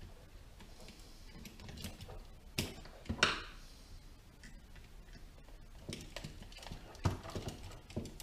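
Plastic headlight assembly and bracket being handled and fitted together by hand: scattered light clicks and knocks, with a sharp click and a short scrape about three seconds in and another cluster of clicks around seven seconds.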